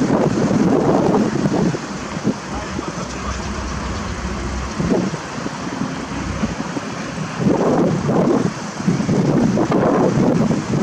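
Cars driving slowly past one after another, engine and tyre noise swelling as each one goes by, with wind buffeting the microphone. No sirens are sounding.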